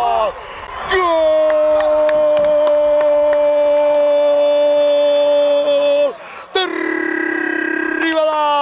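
A football commentator's long drawn-out goal cry: one shouted note held for about five seconds, sliding down in pitch as the breath runs out. After a short break for breath a fresh held note starts, with a fast trembling waver.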